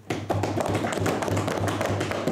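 Members thumping their wooden desks in approval in a parliamentary chamber: a fast, dense run of many knocks that starts just after a speaker's point and keeps going.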